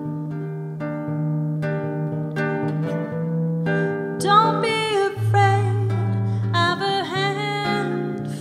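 Jazz band playing a slow samba-canção: guitar plucking chords over a steady low bass note, then a louder melody line with vibrato comes in about four seconds in.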